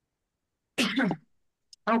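A person's brief throat clearing about a second in, set in dead silence. Speech begins just before the end.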